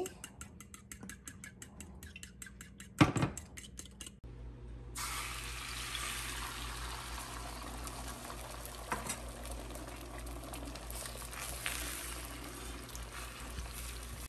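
Spoon beating eggs in a small ceramic bowl, a rapid run of light clicks against the bowl, with one loud knock about three seconds in. After a short gap, beaten egg sizzling steadily in a hot oiled frying pan, with a few light clicks of the utensil on the pan.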